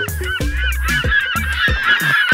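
A flock of birds calling noisily, the calls crowding together and growing louder toward the end. Background music with a steady beat plays underneath.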